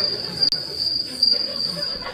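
A cricket's steady high-pitched trill that starts and stops abruptly, part of a film soundtrack played over a hall's loudspeakers.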